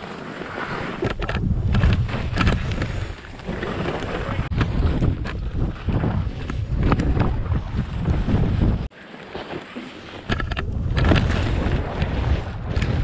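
Wind buffeting an action camera's microphone while skis scrape and hiss over packed, tracked-out snow on a fast downhill run. It drops off briefly about nine seconds in, then comes back loud.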